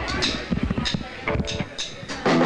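Count-in for a live rock-and-roll band: about four evenly spaced strikes, roughly half a second apart, with voices over them, just before the band comes in.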